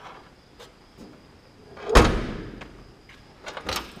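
Trunk lid of a 1969 Plymouth Barracuda fastback slammed shut, a single loud thud about halfway through with a short ring after it. A few light clicks and knocks come before and after.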